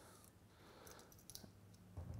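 Near silence, with a few faint clicks about a second in as small printer-kit parts are handled.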